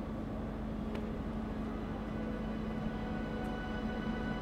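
Quiet background film-score music: a steady, sustained drone-like tone with a low hum beneath it and a faint click about a second in.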